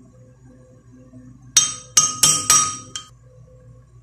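A metal spoon clinking against a glass blender jar four times in quick succession about halfway through, each strike ringing briefly, as peanut butter is knocked off the spoon into the jar.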